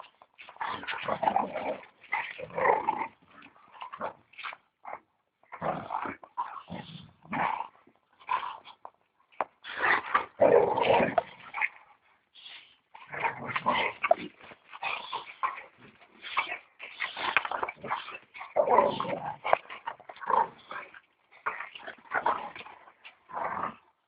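Two boxer dogs play-fighting, growling and whining in short, irregular bursts with brief pauses between.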